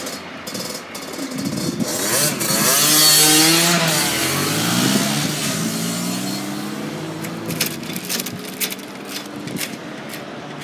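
Level crossing barriers lifting: a motor whine that rises in pitch about two seconds in and then holds, with a few sharp clicks near the end.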